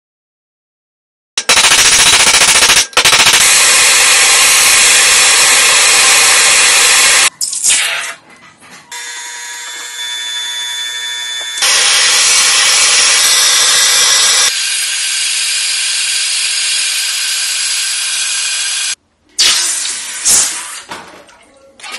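Automatic chain-making machine running, a loud, rapid mechanical clatter that cuts abruptly between sections, with a quieter stretch of steady machine tones partway through.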